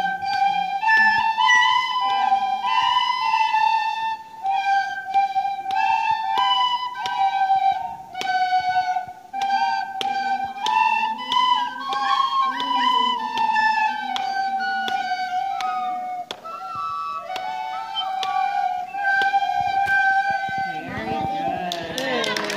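Six children playing a tune together on tin whistles, one clear note after another. The tune ends about a second before the close.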